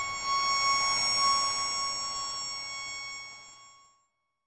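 A single high feedback tone with its overtones, ringing on after the final chord of a heavy rock song and fading away to silence near the end.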